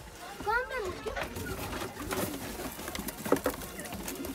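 A domestic pigeon cooing once, a short call that rises and falls, about half a second in. Faint knocks and rustling follow as the cardboard nesting box is handled.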